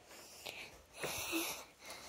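A girl's breath close to the microphone: one short, faint breath about a second in, between her spoken phrases.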